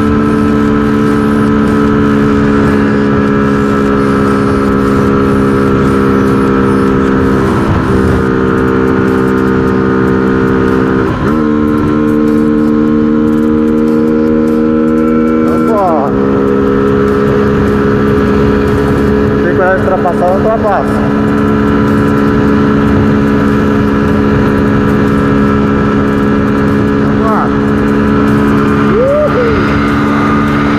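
Honda CG 125 Fan's single-cylinder four-stroke engine running steadily at high revs near its top speed, with wind rushing over the microphone. The engine note dips briefly three times in the first half.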